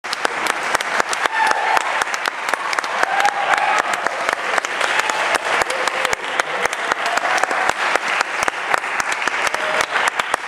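Audience applauding steadily: dense, irregular hand clapping, with a few faint voices mixed in.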